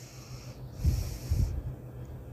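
A person's breath close to the microphone: a short hiss at the start, then a longer breathy hiss from about a second in, with two soft low bumps.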